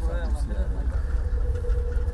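Men's voices in a group talking over a heavy low outdoor rumble. A steady hum comes in about a second in.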